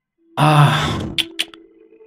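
A voiced sigh, one drawn-out "ah" lasting about a second and fading away, followed by two short clicks.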